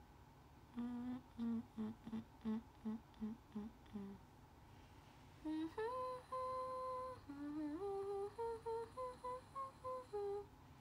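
A young woman humming a tune with closed lips: a run of about eight short, evenly spaced low notes, then, after a pause of a second or so, a slower phrase of longer held notes that steps upward in pitch toward the end.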